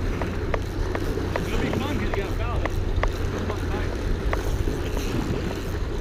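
Wind buffeting the microphone over waves washing against jetty rocks, with a light ticking about two to three times a second from a spinning reel as a hooked fish is reeled in.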